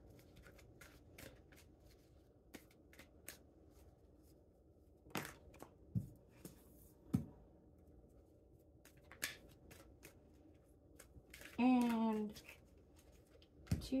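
A deck of tarot cards handled and dealt by hand, with scattered soft flicks and taps as cards slide off the deck and are laid on a stone countertop. About twelve seconds in, a short hummed voice falls in pitch.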